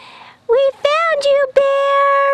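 A high, clear voice-like sound in a short tune: three quick notes that bend up and down, then one long held note.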